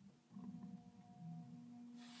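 A faint, steady tone with a few overtones, held from just after the start to the end.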